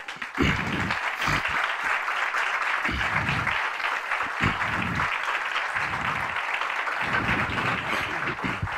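An audience clapping steadily, starting a moment after the final words of the talk.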